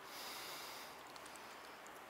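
A faint breath through the nose close to the microphone, a soft hiss that swells in the first second, over low outdoor background noise with a few faint ticks.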